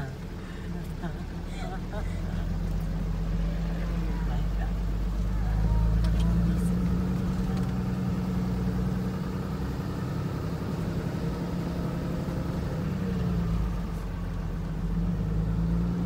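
A car or truck engine running at low speed, heard from inside the cab as it drives slowly over a rough dirt track, with a few light knocks. The engine note swells slightly about a third of the way in, then settles.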